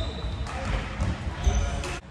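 Badminton doubles rally on a wooden sports-hall floor: players' shoes thud on the court about twice a second, with a short shoe squeak in the second half and sharp racket strikes on the shuttlecock.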